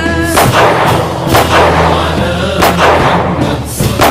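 Fireworks going off in loud bangs, about four in quick succession, each trailing off in a rumble. Music plays underneath.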